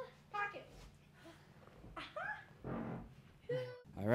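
Faint, short voice sounds from a toddler and an adult, a few separate utterances, one rising and falling in pitch about halfway through, over a low steady hum.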